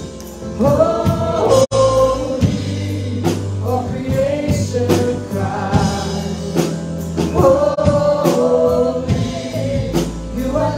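A live church worship band and singers performing a slow, sustained worship chorus: several voices over keyboard, acoustic guitar and drums. The sound cuts out for an instant under two seconds in.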